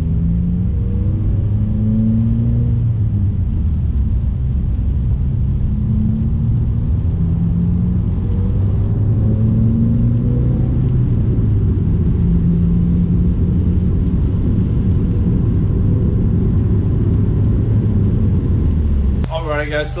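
Subaru WRX's turbocharged flat-four engine and road noise heard inside the cabin while driving in slow traffic: a steady low rumble with low engine tones that shift up and down.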